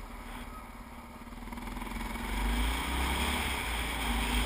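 Dirt bike engine running while riding, its pitch rising as the rider accelerates about two seconds in, with wind rumble on the microphone growing louder along with it.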